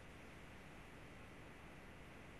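Near silence: only a faint, steady hiss of the line.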